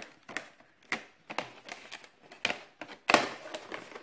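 Stiff clear plastic blister packaging crackling and snapping as a large craft lever punch is pulled out of it: a string of irregular sharp clicks, the loudest about three seconds in, followed by a brief rustle.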